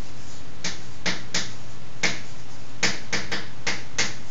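Chalk writing on a blackboard: a string of about nine short, irregularly spaced taps and scratches as the letters are written.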